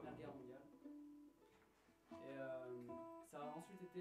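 Gypsy-jazz acoustic guitar with an oval soundhole, played softly: a few plucked notes and chords ring out in short phrases, with a brief pause around the middle.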